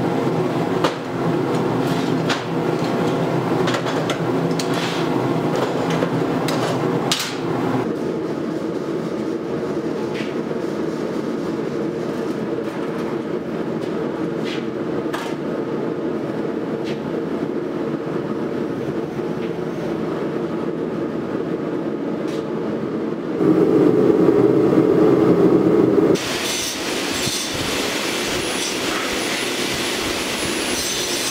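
Shop machinery running steadily: a gas forge burning and a metal-cutting bandsaw cutting steel hammer stock. The sound changes about eight seconds in, grows louder and lower for a few seconds past two-thirds of the way, and turns hissier near the end.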